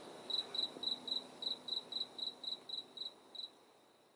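Cricket chirping in an even series of short, high-pitched chirps, about four a second, which stops about three and a half seconds in.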